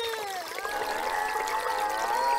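Stream water trickling and gurgling in a steady flow of many overlapping bubbling tones: a running-river sound effect.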